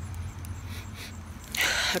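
A person sniffing a bar of soap: one short, breathy draw of air through the nose near the end, over a faint steady low hum.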